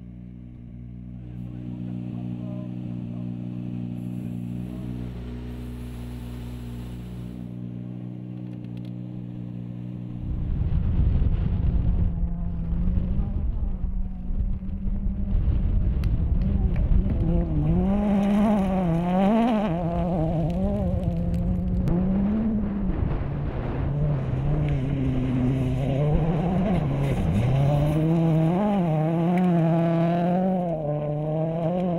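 A steady low hum for about the first ten seconds. Then a Ford Fiesta RRC rally car's engine starts, running hard on a gravel stage, its pitch rising and falling again and again with gear changes and lifts, over loose gravel and tyre noise.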